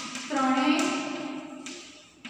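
A woman's voice drawing out a word for about a second, with light taps of chalk on a blackboard as she writes.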